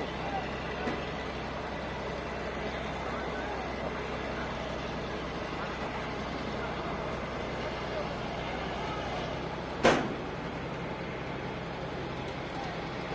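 Truck-mounted crane's engine running steadily as it hoists a wrecked truck cab, with voices talking in the background. One sharp bang about ten seconds in.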